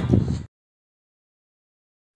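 A man's voice over a background music bed cuts off abruptly about half a second in, followed by dead silence.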